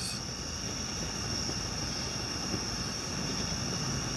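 Gas fire table flame burning with a steady low rushing noise, under a constant high-pitched insect trill.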